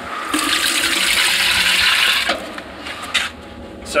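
Cloudy juice lees, the settled solids from the bottom of a stainless steel wine tank, gushing out of a tank outlet into a plastic measuring jug. It runs in a steady rush for about two seconds, then stops.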